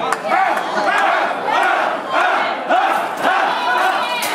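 Wrestling crowd shouting together in a repeated rhythm, about two yells a second, with a few sharp knocks among it.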